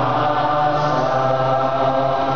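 Church congregation singing the closing hymn together, many voices holding long, drawn-out notes.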